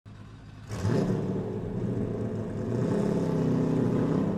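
Car engine sound effect: a low engine drone that grows louder about a second in and then runs steadily.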